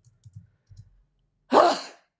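A man coughs once, short and loud, about a second and a half in. Faint keyboard typing comes before it.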